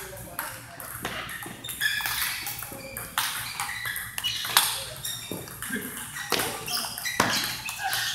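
Table tennis rally: a celluloid ball clicking off rubber paddles and bouncing on the table in quick irregular strikes, with voices in the background.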